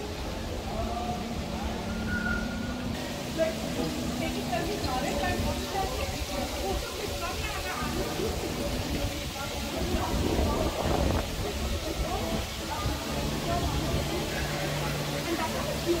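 Indistinct chatter of people talking nearby, over a steady low background rumble; a low steady hum comes in about three quarters of the way through.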